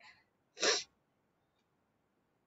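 A woman sneezes once: a faint breath at the start, then one short, sharp burst about half a second in.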